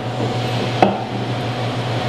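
Beer being poured from a glass bottle into a stemmed glass, with a single sharp knock a little under a second in, over a steady low hum of room air conditioning.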